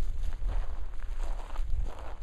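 Footsteps and rustling of a person moving over dry ground and brush, irregular, over a low rumble on the microphone.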